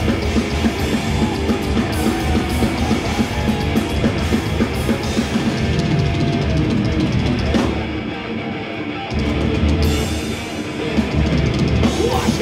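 Thrash metal band playing live: distorted electric guitars over a drum kit, heard through the concert PA. The bass end drops out briefly about eight seconds in, then the full band comes back.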